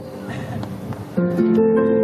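Guitar music: earlier notes fade out, then louder plucked guitar notes start about a second in and ring on.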